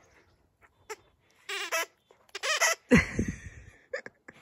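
Squeaker in a plush dog toy squeaking twice as a large dog bites down on it, each a short wavering high squeal, followed about three seconds in by a louder, lower sound.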